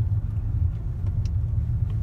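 A car driving slowly, heard from inside the cabin as a steady low rumble of engine and road.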